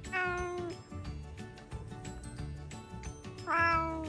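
Domestic cat meowing twice: a short meow at the start and another near the end that falls in pitch as it closes.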